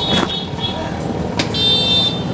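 Street traffic running steadily, with a high-pitched vehicle horn beeping once near the end.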